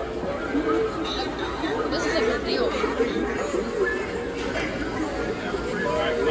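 Indistinct voices talking throughout, with no clear words.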